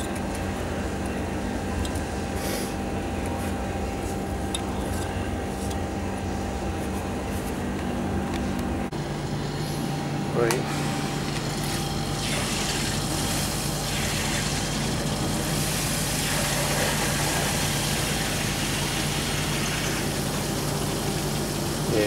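Steady machinery hum that shifts in pitch about nine seconds in. From about twelve seconds in comes the rush of water as the ice builder's chilled-water circulating pump moves water through the tank, its flow restored now that the insulating material that was blocking the pump has been cleaned out.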